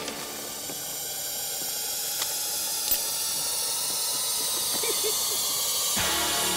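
A steady hissing drone with faint high tones that slowly swells in loudness, a tension-building film soundtrack cue, with a couple of faint clicks.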